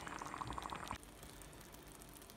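Seasoned broth with rice and chicken boiling in a wide pan, a faint dense bubbling as the water cooks off on medium heat. It cuts off about a second in, leaving only a faint hiss.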